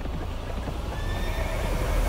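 A horse neighing, with hoofbeats underneath.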